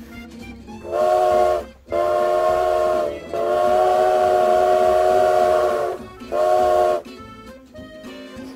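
A multi-note chime whistle sounds a chord in four blasts: a short one about a second in, a slightly longer one, a long one of nearly three seconds, then a short one. Faint music plays before and after it.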